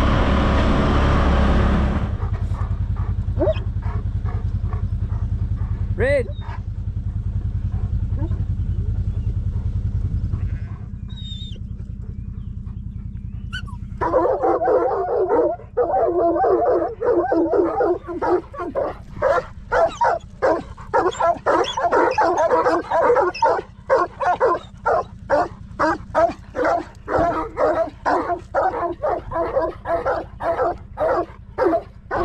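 A farm vehicle's engine runs loudly for the first two seconds, then settles to a steady low hum that fades out just before the middle. From about halfway through, a sheepdog barks over and over, two or three barks a second to the end, working the sheep.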